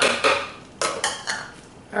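A metal spoon knocking and scraping against a blender jar as cream cheese is scooped into it: about four sharp clinks over two seconds.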